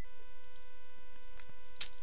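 Steady electrical whine in the recording chain, a constant tone with evenly spaced overtones, with a few faint clicks and a brief hiss near the end.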